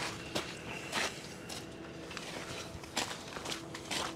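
Footsteps on gravelly ground, a few irregularly spaced steps.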